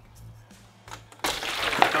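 Water poured from a clear plastic bowl into a plastic bin, a splashing rush that starts suddenly about a second in after a quiet start.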